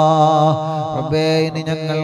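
Arabic devotional chant by a male voice: a long held note with a slow waver, which breaks into new chanted syllables about a second in.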